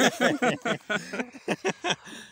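Laughter: a run of quick, breathy 'ha' pulses, about five a second, stopping near the end.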